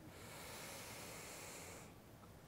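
A faint inhale of breath lasting almost two seconds, picked up close on a clip-on microphone.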